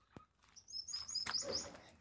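A small bird chirping faintly: a quick run of short, high chirps starting about half a second in and lasting about a second.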